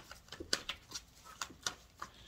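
A deck of tarot cards handled and shuffled by hand: a few quiet, separate flicks and taps of the cards.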